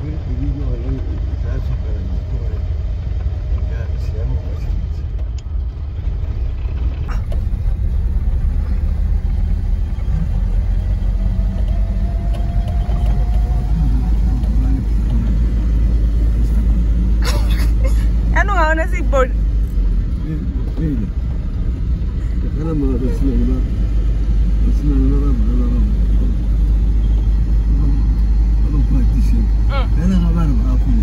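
Steady low engine and road rumble inside the cab of an old vehicle on the move. Voices are heard over it at times in the second half.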